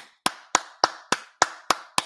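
One man clapping his hands in a steady, even rhythm, about three and a half claps a second.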